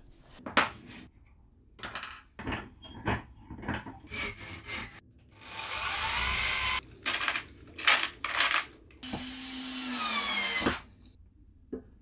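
A power drill boring into a block of timber held in a bench vice, running steadily for about a second. Knocks and clatter of wooden pieces being handled come before and after it, and near the end the drill runs again for nearly two seconds.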